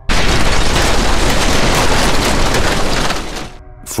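Explosion sound effect: a sudden loud blast, then a rumble that fades out about three seconds in.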